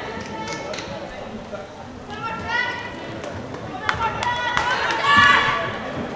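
Shouting voices echoing in an indoor sports hall during a handball game, high-pitched and rising to the loudest bout near the end, over a constant hall din. A few sharp knocks sound about four seconds in.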